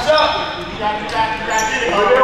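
A basketball bouncing on a hardwood gym floor, with short high-pitched sneaker squeaks and players' voices.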